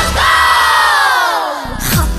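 A shouted group-vocal effect in a dance-pop track: one long call that slides down in pitch, as the beat drops out near the end.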